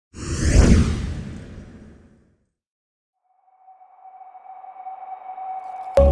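Cinematic logo-intro sound effects: a sudden whoosh with a deep low hit at the start that fades away over about two seconds, then after a moment of silence a single high tone swelling steadily louder toward the end.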